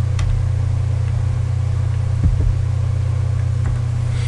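Steady low hum, the recording's own background noise, unchanging throughout, with a couple of faint clicks.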